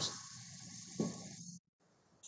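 Faint steady hiss of background noise on a remote video-call audio line, with a brief soft sound about a second in. The audio then cuts off suddenly to dead silence.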